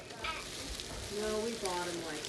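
Crinkling and rustling of a plastic gift bag and tissue paper as a boxed present is pulled out and unwrapped. A short voice sounds about a second in.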